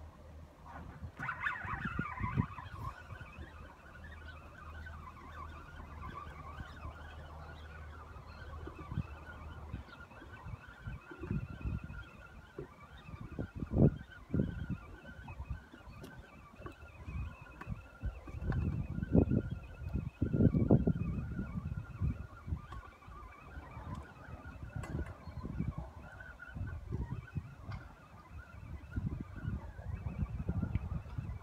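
Wind buffeting the microphone in irregular low gusts, a few strong ones in the middle, over a faint steady high tone from a distant source.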